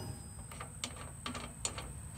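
A few light metallic clicks as a nut is worked loose and turned off a welder's output terminal stud by hand.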